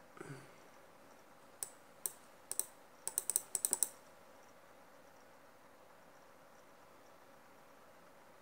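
Computer keyboard keys clicking: a few separate keystrokes, then a quick run of about eight clicks in under a second around the middle, followed by a faint steady background.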